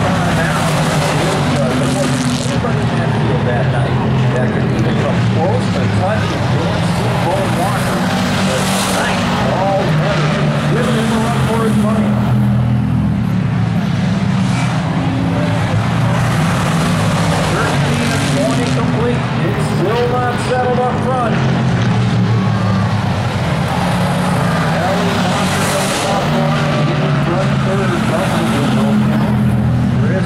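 Hobby Stock race cars lapping an oval track, their engines running at speed throughout, with the engine pitch rising and falling as the cars work through the corners.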